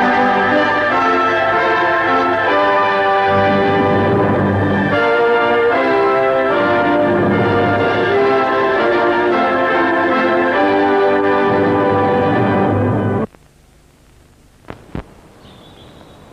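Orchestral film music with brass, held chords changing about once a second, cutting off suddenly about three seconds before the end. Then it is quiet apart from two short knocks close together.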